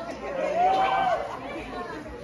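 Voices talking and calling out. About half a second in, one voice holds a raised, arching note for roughly a second.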